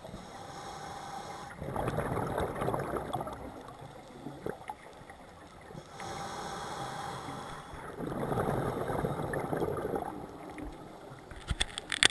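Scuba diver breathing through a regulator underwater: an inhale with a faint thin whistle, then a louder rush of exhaled bubbles, twice over, about six seconds per breath. Near the end, a few sharp clicks.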